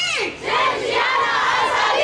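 A large crowd of marchers shouting a slogan together: one voice trails off at the start, then a dense mass of many voices comes in about half a second later and holds loud to the end.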